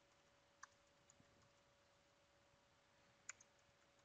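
Near silence with a few faint computer keyboard clicks as a username and password are typed, over a faint steady hum.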